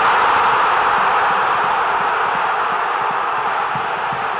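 Stadium crowd cheering a goal: a dense, steady roar that slowly dies down.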